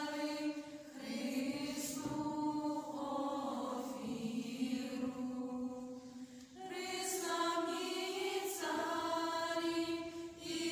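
Small choir of girls and women singing a Ukrainian Christmas carol (koliadka), unaccompanied, in long held phrases with brief pauses for breath near the start and past the middle.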